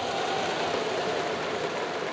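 Steady, even noise of a large crowd in a domed baseball stadium.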